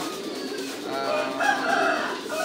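A single long, held bird call lasting about a second, starting about a second in.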